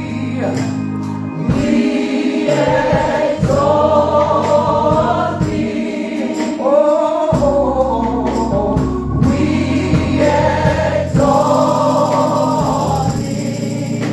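Gospel praise team singing together in harmony into microphones over instrumental backing with a steady beat, holding long sung notes.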